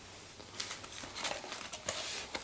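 Rustling and crinkling from hands handling the toy's packaging, in a few short bursts, the last near the end.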